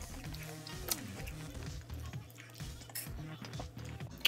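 A woman chewing a mouthful of cheeseburger with her mouth closed, humming short wavering "mm" sounds, with a few wet mouth clicks.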